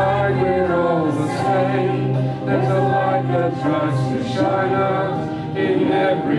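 A small group of voices, men and a woman, singing a slow, gentle song together through microphones, with sustained low notes held underneath.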